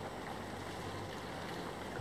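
Steady outdoor background noise with an even low hum and no distinct events.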